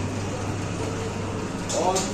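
A steady low hum under an even background noise, with a voice starting near the end.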